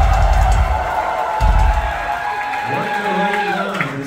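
Live club crowd cheering over a held musical drone between songs, with two deep bass swells in the first two seconds. The drone fades out near the end as a man's voice comes in.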